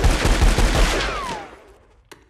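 Cartoon gunfire sound effect: a rapid, continuous volley of shots that stops about a second in and dies away, with a falling whistle as it fades.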